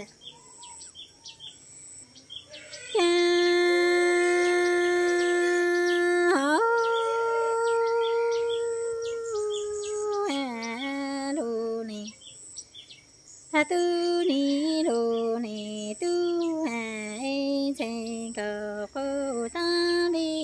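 A woman singing Hmong sung poetry (lug txaj, kwv txhiaj) unaccompanied. A long held note comes in about three seconds in, then a higher held note follows. After that come shorter phrases that slide and fall in pitch, with a brief pause past the middle.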